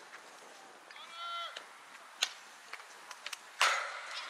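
Sounds of a youth softball game: a girl's high-pitched shout about a second in, then a single sharp crack a little after two seconds, and near the end a louder hard knock, the loudest sound here, as play breaks loose at home plate.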